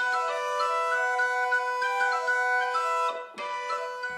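Portative organ playing a melody of sustained notes over a steadily held drone note. The sound drops away briefly a little past three seconds in and returns more softly.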